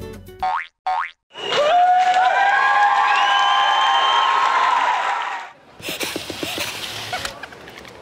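Cartoon sound effects of an animated ident. A sound glides up and settles into several held tones for about four seconds, then a shorter, rougher burst follows. A brief tail of music fades out at the very start.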